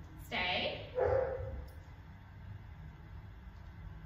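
A dog giving a drawn-out whining bark, twice in quick succession within the first second and a half.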